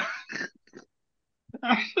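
Men's voices in conversation over a call: speech trailing off, a short dead-silent gap, then a laugh and speech starting again near the end.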